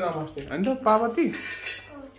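Metal dishes and cutlery clinking and rattling, with a man talking over them.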